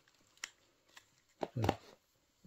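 One sharp click about half a second in and a fainter tick near the middle, from hands handling a potted pineapple crown in a plastic nursery pot, then a short spoken "ye".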